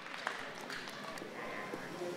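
Faint background chatter of people in a hall, with scattered voices and a few short clicks.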